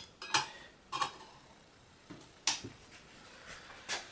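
Metal lid being set onto a small metal cooking pot: a few short, light metallic clinks spread over the few seconds as it is fitted around a thermometer probe.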